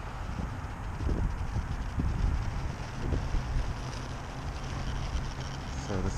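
Wind buffeting the camera microphone: an uneven low rumble with faint hiss above it.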